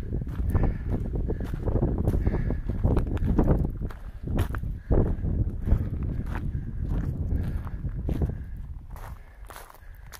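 Footsteps crunching up a trail of loose stones at a steady walking pace, over a low rumble. The steps get quieter near the end.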